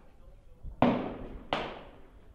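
Two gunshots from other shooters down the firing line, about two-thirds of a second apart, each followed by a decaying echo.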